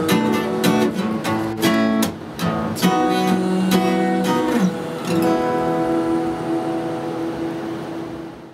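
Acoustic guitar playing the closing bars of a song: a run of strummed chords, then a last chord struck about five seconds in and left ringing as it fades away.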